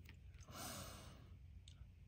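A quiet breath out, like a soft sigh, about half a second in, in near silence; a faint tick follows near the end.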